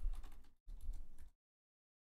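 Typing on a computer keyboard, in two short runs of about half a second each.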